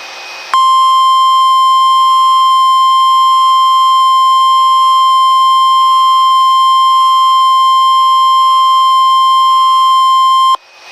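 NOAA Weather Radio 1050 Hz warning alarm tone: a single loud, steady tone that cuts in sharply about half a second in after a moment of radio hiss and holds unchanged. It is the signal that a severe weather message, here a tornado watch, is about to be broadcast.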